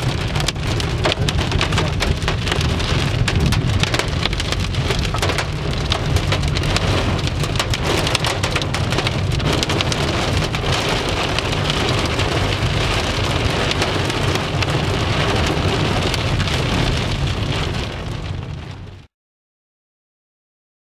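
Hail and heavy rain pelting the roof and windscreen of a moving car, heard from inside the cabin as a dense patter of hits over the low rumble of the car. It fades and then cuts off about a second before the end.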